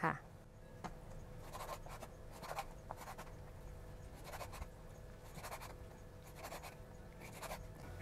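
Knife slicing through raw pork diaphragm tendon on a wooden cutting board: faint, irregular cuts and taps of the blade on the board.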